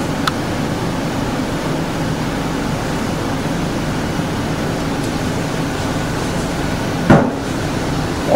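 Steady hum and hiss of room ventilation or equipment fans. A faint click comes just after the start and a single loud thump about seven seconds in.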